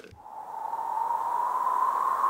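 Synthesized wind sound played on a keyboard synth: a hiss that swells in over the first second, with a whistling band slowly rising in pitch.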